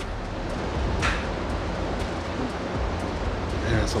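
Steady rushing background noise, with a few faint clicks and a short hiss about a second in.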